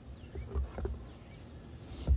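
Metal lid of a gallon can of asphalt roof cement being pried open with a hand tool: a few small scattered clicks and knocks, with a louder knock right at the end. A low wind rumble and a steady high insect buzz run underneath.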